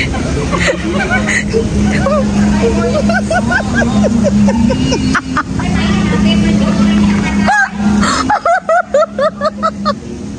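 Women's voices laughing and talking over a steady low hum; near the end the hum stops and short, choppy vocal sounds take over.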